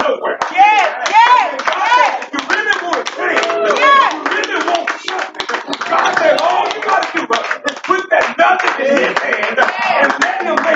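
Church congregation clapping unevenly while voices call out loudly, in pitches that rise and fall.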